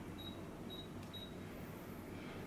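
Three short high beeps about half a second apart: the key-press tones of an Android car head unit's touchscreen as three digits are tapped on its phone dial pad. A low steady hum runs underneath.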